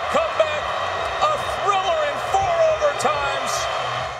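Large stadium crowd cheering, a dense steady roar with individual shouts and whoops breaking through it throughout.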